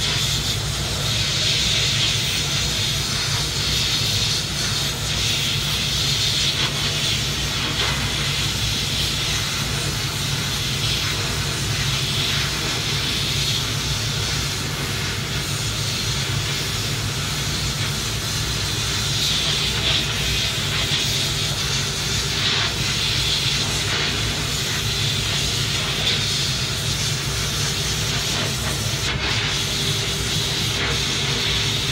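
Glass bead blasting gun in a blast cabinet hissing steadily as compressed air drives glass beads onto a motor carrier plate, with a steady low hum beneath.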